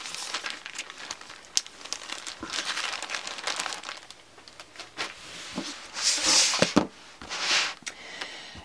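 Clear plastic zip-top bags holding paper templates crinkling as they are handled and moved about on a cutting mat, with two louder rustles near the end.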